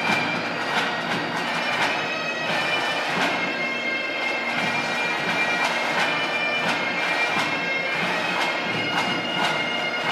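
Bagpipes playing a processional tune over a steady drone.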